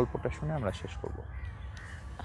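Crows cawing in the background, a few faint harsh calls, after a man's voice stops about half a second in.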